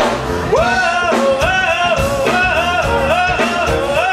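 Live band playing (electric guitar, bass, keyboard) with a male vocalist singing over it; his line comes in about half a second in as held notes that slide up into each pitch.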